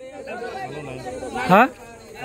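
Only speech: several people talking quietly, then a man says a short rising 'haan?' near the end.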